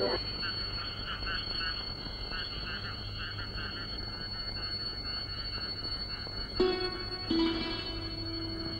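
Frogs croaking over and over in a steady night chorus. Near the end, two plucked string-instrument notes ring out as background music begins.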